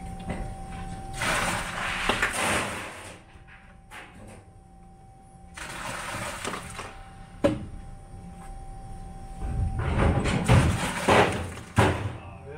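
Plastic Gatorade squeeze bottles being handled and set into a plastic carrier: three bursts of rushing noise a few seconds apart, a sharp click about seven seconds in and another near the end, over a faint steady hum.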